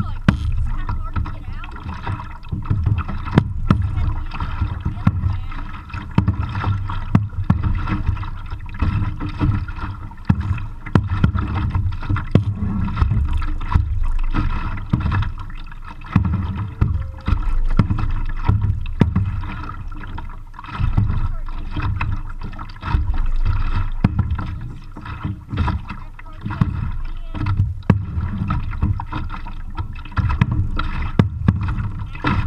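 Kayak paddling heard muffled through a waterproof camera case on a chest strap: a loud, uneven low rumble of water and wind, with frequent knocks and clicks as the paddles work.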